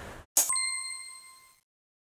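A single bell-like ding sound effect: a sharp strike just under half a second in, ringing on one clear tone and fading out over about a second.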